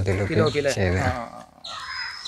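A man's voice talking for about the first second, then a short pause with a soft hiss near the end.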